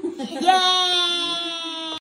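A young child's voice: a few short sounds, then about half a second in one long, high-pitched cry held to the end, its pitch sinking slightly.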